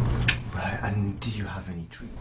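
Soft, indistinct speech, much quieter than the interview talk around it.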